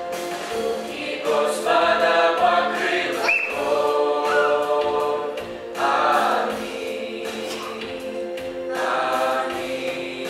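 Mixed choir of young women and men singing a hymn in harmony through microphones, holding long chords that swell louder a few times.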